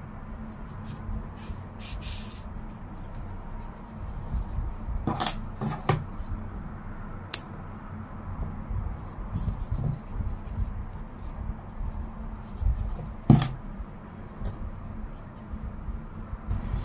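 Hands handling and rubbing a puffy crocheted yarn flower, with a few sharp clicks, the loudest about thirteen seconds in.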